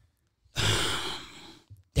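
A man's long sigh, starting about half a second in and fading out over about a second.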